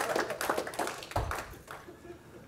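Audience clapping that thins out and dies away over about a second and a half.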